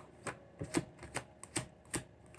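A deck of tarot cards shuffled by hand: a run of short, sharp card clicks, about two a second.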